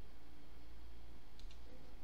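Two quick computer mouse clicks close together, about a second and a half in, over a steady low hum.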